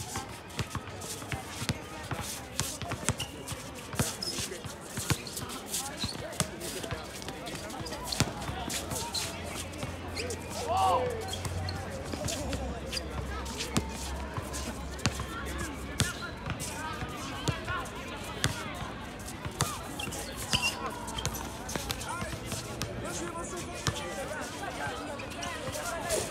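Basketball bouncing on a hard outdoor court, with irregular thuds from dribbling and play. Players' voices call out, with one louder call midway.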